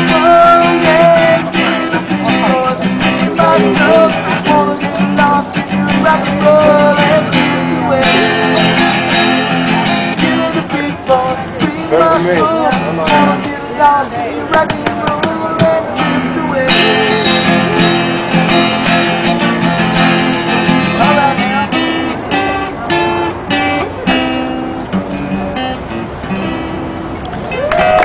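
Acoustic guitar played with the feet, plugged into a small amplifier, steady chords and picked notes throughout, with a voice singing along over it. The playing eases a little near the end.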